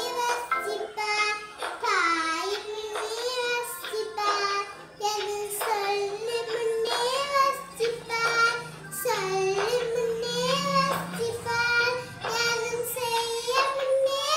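A preschool girl singing a Tamil song solo, one voice in phrases a second or two long with short breaths between.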